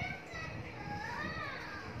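A child's high voice talking, its pitch rising and falling in a sing-song way.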